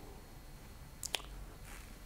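Quiet room tone with two faint clicks in quick succession about halfway through.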